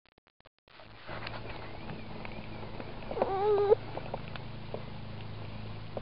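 A toddler's short, wavering vocal sound, a coo or squeal lasting about half a second, a little past three seconds in. Under it a steady low hum starts about a second in, with scattered small clicks.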